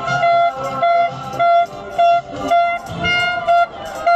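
Plastic trumpet-style horn blown in short, evenly repeated blasts of one steady note, about two a second.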